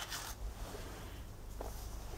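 Paper wrapping rustling briefly as a piston ring is taken out of it, then a faint click.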